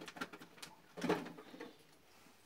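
Plastic-wrapped packages crinkling and rustling, with cardboard scraping, as items are handled and set into a cardboard shipping box. A burst of several short, sharp rustles comes about a second in.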